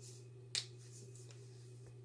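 A single short, sharp snap about half a second in, over a faint steady low hum.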